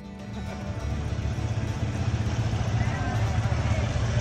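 A vehicle engine running with a steady low rumble that fades in during the first second and then holds.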